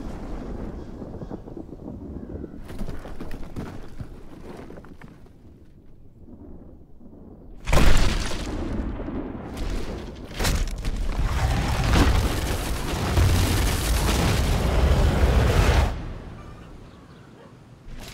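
Film soundtrack of deep rumbling and booming sound effects. A low rumble fades over the first several seconds, then a sudden loud boom about eight seconds in gives way to sustained heavy rumbling that dies away near the end.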